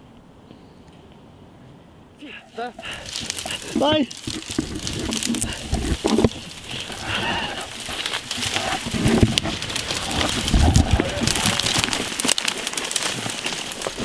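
Near silence for about two seconds, then loud, noisy rustling and scuffling with many sharp knocks, and a few short shouts or yells from men.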